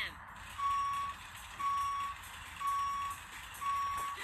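Reversing-alarm beeps, as from a backing vehicle: a steady high beep repeated four times about a second apart, heard from a cartoon's soundtrack played on a screen.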